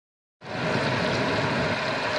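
Battered pork pieces deep-frying in hot oil: a steady sizzle that starts about half a second in.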